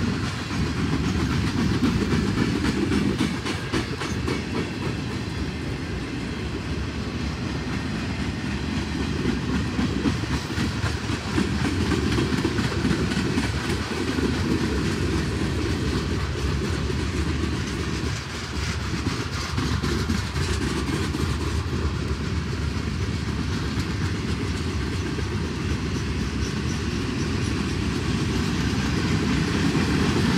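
A long string of freight boxcars rolling past at close range: a steady low rumble of steel wheels on rail, with the rapid clacking of wheels over rail joints running through it.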